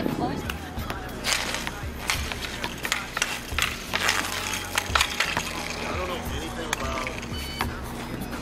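Inline skate wheels rolling on an outdoor paved rink, with irregular clacks and taps of a hockey stick on the pavement and puck as a skater stickhandles.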